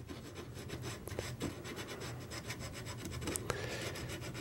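Fine 220-grit sandpaper wrapped on a bamboo stick, scratching and rubbing in small quick strokes against carved wood as it sands deep between the petals of a carved flower. It is faint, with a few slightly sharper clicks scattered through.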